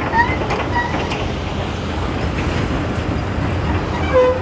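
Crawler excavator's diesel engine running at a steady rumble, mixed with the noise of passing road traffic.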